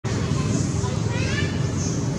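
People talking in the background over a steady low outdoor rumble, with a short high-pitched call heard about a second in.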